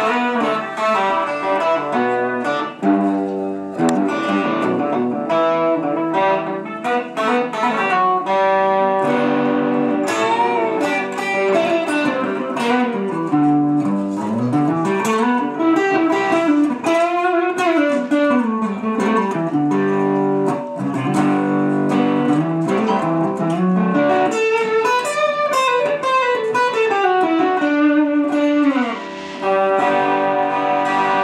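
Cozart custom-made double-neck 6-string/12-string electric guitar played as an instrumental passage, with notes sliding up and down in pitch and a brief drop in loudness near the end.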